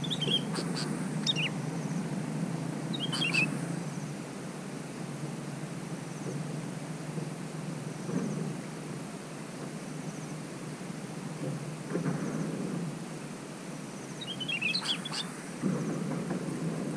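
Yellow-vented bulbuls giving short bursts of bubbly chirping calls: a few near the start, one about three seconds in, and another near the end, over a steady low background noise.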